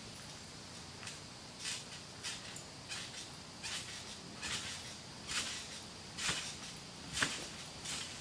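Trampoline bounces heard from a distance: a soft, regular stroke from the mat and springs about every three-quarters of a second, with a sharper, louder one about seven seconds in.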